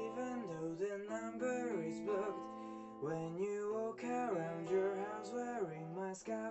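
Guitar strummed in a steady rhythm, with a man's voice singing over it.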